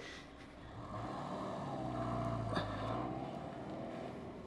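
A car engine running, its steady hum swelling from about a second in and fading again near the end.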